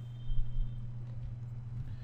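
A steady low hum with a few dull low thuds about half a second in.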